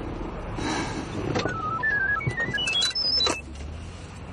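A mobile phone ringtone: a quick melody of short electronic beeps stepping between pitches, starting about two seconds in, over a low car-cabin hum.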